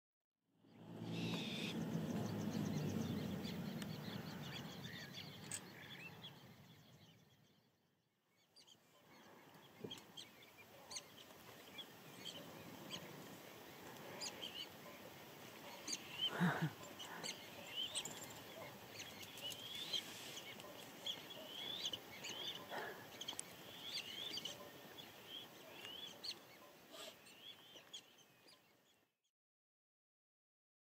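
A low, steady drone with a few even tones, loudest at first and fading out over about seven seconds. After a brief gap, many birds chirp and call in quick high notes for the rest of the time, with one louder sudden sound about halfway through.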